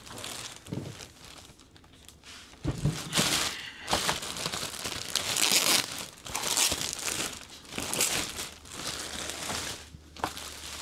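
Large clear plastic bag crinkling and rustling in repeated irregular bursts as it is pulled down off a boxed 3D printer. The crinkling starts about three seconds in, just after a low thump.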